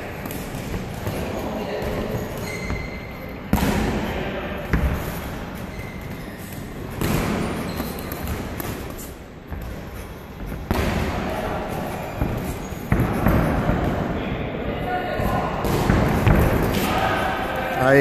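Boxing sparring: dull thuds of gloved punches landing and footsteps shuffling and stamping on the ring canvas, with sharper knocks every few seconds.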